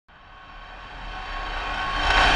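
Logo-intro riser sound effect: a rush of noise with a few steady tones running through it, swelling steadily louder over about two seconds.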